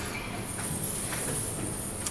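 Dancers' feet stepping and shuffling on a wooden studio floor, soft irregular footfalls over a steady room hiss.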